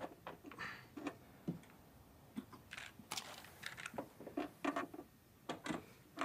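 Scattered faint clicks and clacks of an old cassette deck's push buttons being pressed and the deck handled, irregular and spread across the whole stretch.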